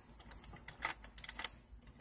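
Number wheels of a three-wheel combination lock on a metal lockbox turned by thumb, clicking lightly and unevenly as they rotate while a feeler strip probes for each wheel's flat spot.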